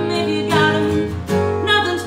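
A woman singing to her own strummed acoustic guitar, the voice gliding between held notes over steady chords.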